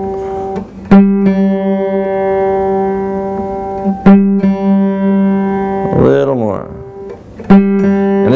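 Steel-string acoustic guitar playing the same note, a G, three times, each pluck left to ring about three seconds. This is the fifth fret of the D string checked against the open G string while tuning. The G string is still a little flat.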